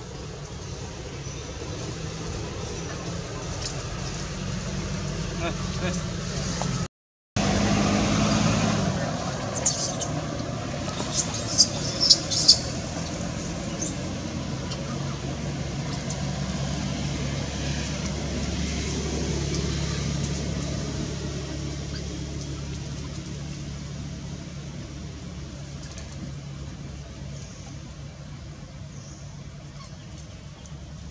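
Steady low hum of a motor vehicle engine running, with faint voices. A handful of short, very high chirps come about ten to twelve seconds in, and the sound drops out briefly at an edit about seven seconds in.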